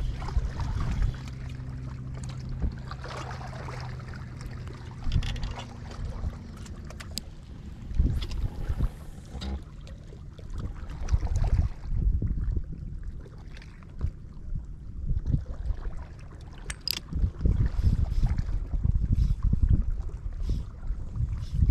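Wind buffeting the microphone in irregular low gusts, with a steady low hum under it for the first several seconds.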